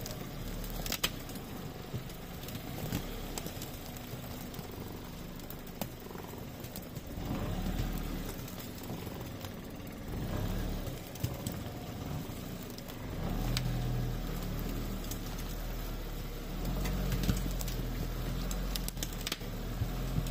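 All-terrain vehicle's engine running as it crawls over rough forest ground, a steady low drone that grows louder about two thirds of the way through. Scattered knocks and rattles from the bouncing vehicle run over it.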